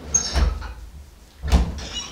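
A wooden door being opened by its handle: handle and latch noises, a louder thump about one and a half seconds in, then a short high squeak.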